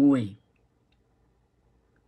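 A man's voice says one short word, then near silence: a pause in his talk.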